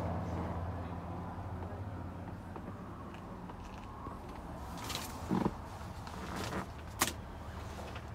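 Faint steady low hum inside a pickup's cab, with a few short soft clicks and rustles of handling about five and seven seconds in.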